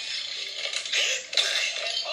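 An animated film's soundtrack playing from a phone's speaker: a string of short sound effects and brief vocal noises, with no dialogue.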